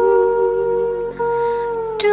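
Vietnamese Nghệ Tĩnh folk-song (ví dặm) music: a single long melody note held steady, sagging slightly in pitch, with a brief break about a second in. A new note begins at the very end.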